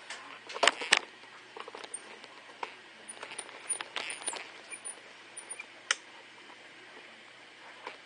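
Handling noise from a hand-held camera: a few sharp clicks and knocks, the loudest two about half a second and a second in and another near six seconds, with small ticks between, over a faint steady low hum.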